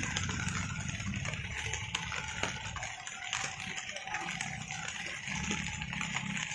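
Low, steady rumble of motor traffic on a wet road, over an even hiss and a few small scattered knocks.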